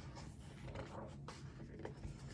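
Faint rustling and rubbing of paper as the pages of a picture book are handled and turned.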